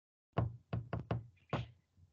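Five quick knocks or taps, slightly uneven, over just over a second.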